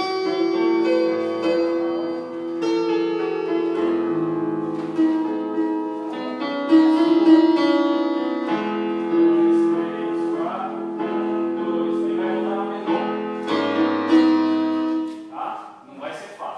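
Electronic keyboard playing a slow run of held chords, each sustained for a second or two at a steady pitch, with a bass note beneath.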